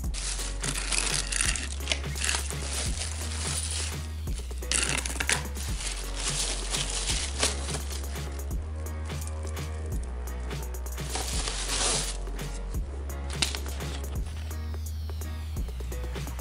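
Background music with a steady bass line, over several bursts of a plastic bag rustling and a used motorcycle chain's metal links clinking as it is lifted out of the bag and dropped into a plastic bowl.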